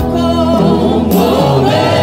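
Gospel worship group singing together into handheld microphones, several voices in harmony over steady low backing notes.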